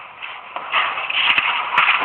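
Paper sheets rustling and being shuffled on a tabletop as documents are handled and signed, growing busier about halfway through, with a couple of light knocks.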